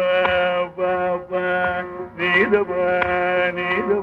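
Carnatic vocal music in raga Kedaragowla: a deep male voice holds long notes with ornamented slides, shadowed by a violin, over light mridangam strokes.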